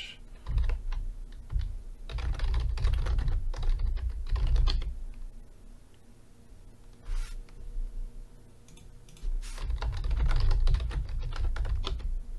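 Typing on a computer keyboard in quick bursts of key clicks, with a lull of a few seconds in the middle.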